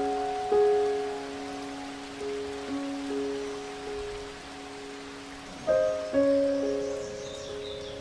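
Slow, sparse piano background music: single notes and soft chords struck a few at a time and left to ring and fade, with a fresh group of notes about three-quarters of the way through. A steady hiss lies underneath.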